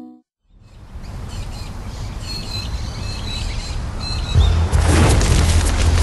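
Birds chirping over a swelling rumble, then a sudden low boom about four and a half seconds in, after which a bushfire's steady low roar and crackling take over.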